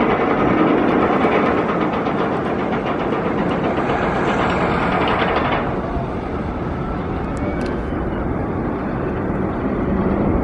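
Titan, a Giovanola steel hyper coaster, running: a steady rumble and clatter from the coaster train on its track. The higher hiss drops away suddenly about six seconds in.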